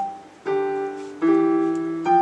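Piano duet played on a digital keyboard's piano voice: notes struck together about half a second and again about a second and a quarter in, each left to ring and fade.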